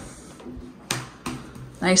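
Cardboard jigsaw puzzle pieces handled on a wooden tabletop, with a sharp tap about a second in as a piece is set down, and a fainter one just after. A short spoken word closes it.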